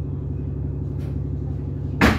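A bus engine drones steadily, heard from inside the passenger cabin as a low hum. There is a faint tick about a second in.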